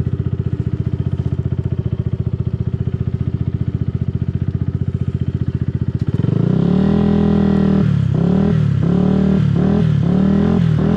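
Yamaha YZF-R125's single-cylinder four-stroke engine running at low revs with an even pulsing beat, then about six seconds in the throttle opens and it accelerates, the revs climbing and dropping several times.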